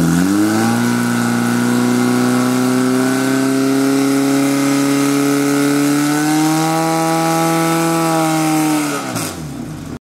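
Portable fire pump engine running at high revs under load, pumping water to two hose lines: a steady drone that creeps slowly up in pitch. Just after nine seconds the revs fall away.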